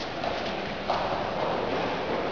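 Footsteps on a hard floor, a couple of steps.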